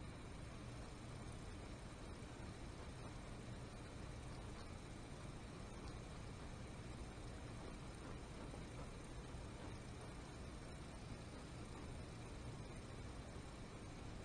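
Quiet room tone: a steady hiss with a low hum and no distinct events.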